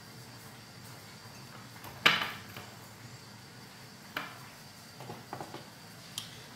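Kitchenware handled on a hard tabletop: one sharp knock about two seconds in, a fainter click a couple of seconds later, and a few light taps near the end.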